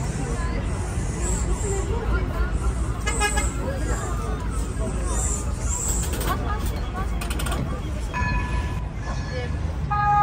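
Busy tram-stop street ambience: waiting people chattering over a steady low traffic rumble. About eight seconds in, a steady horn tone sounds for about a second and a half.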